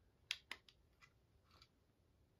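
Two sharp clicks in quick succession as the lamp's switch is flipped and the CFL bulb goes out, then a couple of faint ticks in near silence.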